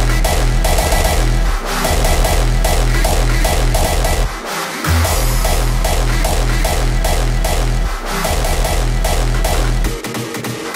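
Hardstyle track's drop playing back loud: a heavy kick and sub bass pulsing steadily under the drop synthesizer, the low end cutting out briefly three times.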